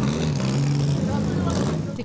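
A car engine running steadily, its pitch rising slightly and easing back around the middle.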